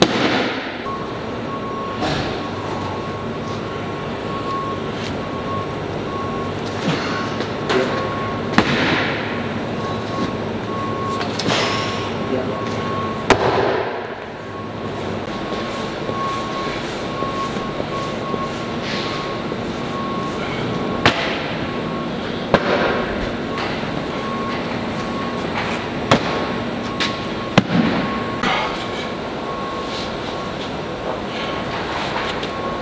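Several heavy thuds of sandbags landing on a concrete floor, spread out over the stretch. They sit over a steady rushing background noise with a faint held tone.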